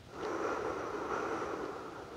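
A woman's long, audible breath out, lasting nearly two seconds, as she lies face down.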